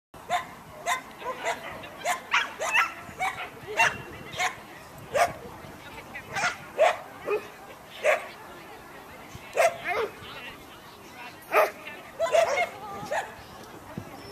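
A dog barking over and over, in short sharp barks that come irregularly, about one or two a second.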